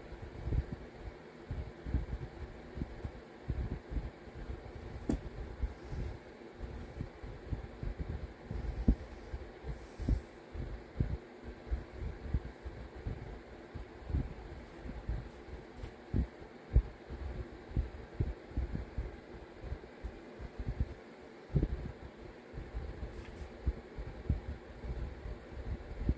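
Irregular soft low thumps as a large single-cut aluminium carbide burr is pressed again and again by hand into soft clay on a padded notebook, stamping a texture into it. The burr is not spinning: there is no grinder whine.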